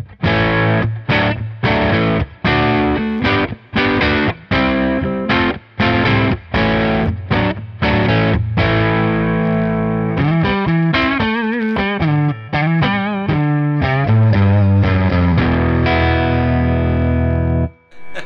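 Overdriven electric guitar through a Nobels overdrive pedal into a Fender Hot Rod Deluxe amp, played on the Telecaster's neck pickup, a Seymour Duncan '59 humbucker, with a heavy bottom end. Short choppy chords with gaps between them give way to single-note bends with vibrato, then a held chord that is cut off just before the end.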